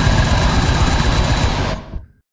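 Goregrind band playing at full speed: heavily distorted guitars over rapid blast-beat drumming, a dense wall of noise. It fades quickly and cuts off suddenly near the end.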